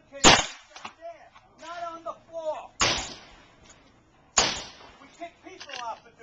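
Three shots from a Hi-Point 9mm carbine, each a sharp crack that rings out briefly. The first and loudest comes about a third of a second in, the next two about two and a half seconds and then a second and a half later.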